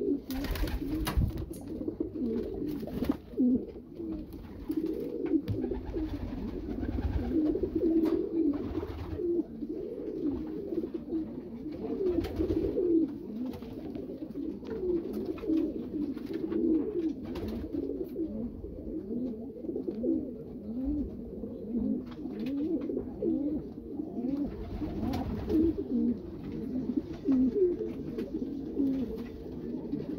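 Racing pigeons cooing, an unbroken run of low, rolling coos, with a brief clatter near the start.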